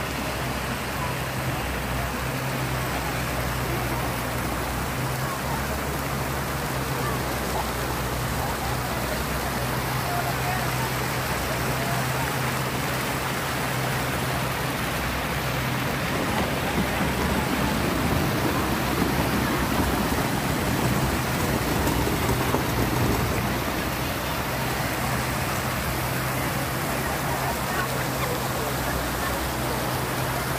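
Fountain jets splashing into a pool, a steady rush of falling water that grows a little louder in the middle.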